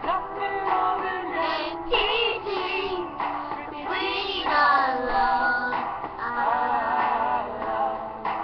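Two young girls singing a pop duet over backing music, picked up by a webcam microphone.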